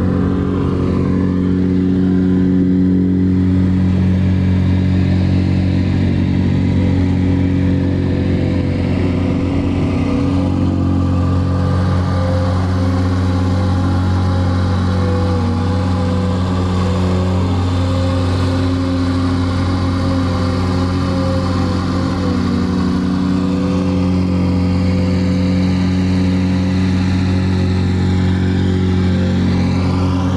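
Volvo EC220E excavator's diesel engine running steadily while the machine digs, heard from inside the cab.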